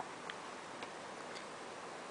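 A few faint, sharp clicks at uneven intervals over a low, steady hiss.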